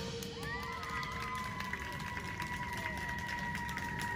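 Faint, scattered clapping and cheering from an audience just after a drum-kit performance ends. A steady high tone starts about half a second in and holds on underneath.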